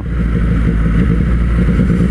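Triumph 765 cc three-cylinder motorcycle engine running steadily at low road speed, heard from the rider's seat.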